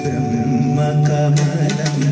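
A male voice singing a long, wavering held note over steady accompaniment with a low drone.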